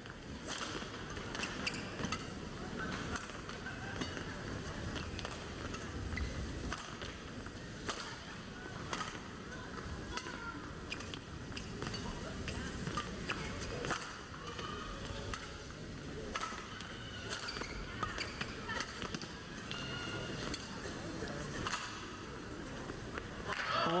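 Badminton rally: sharp racket strikes on the shuttlecock at irregular intervals of about a second, over steady crowd noise with scattered voices.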